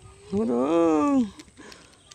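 A man's single drawn-out excited shout, about a second long, rising and then falling in pitch.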